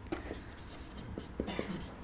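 Felt-tip marker scratching across flip-chart paper as words are written, in short irregular strokes.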